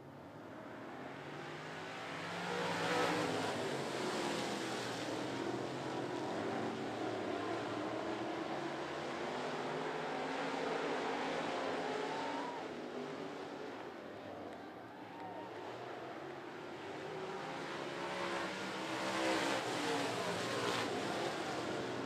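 A field of dirt-track stock cars and trucks racing by under power, their engines mixing into one loud noise. The sound swells as the pack passes about three seconds in, holds, fades around the middle, and swells again as the field comes around near the end.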